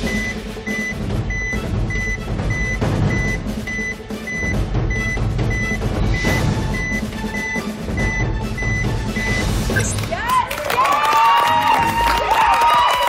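Suspense music cue for a weigh-in reveal: a low pulsing drone under a short high electronic beep repeating a little under twice a second, which stops about nine and a half seconds in. Near the end, people start cheering and shouting.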